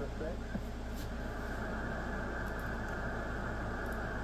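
Shortwave receiver audio tuned to the 20-metre amateur band: steady band static cut off sharply above the voice range, with a faint, unreadable voice fragment from a distant station just after the start and a low steady hum underneath.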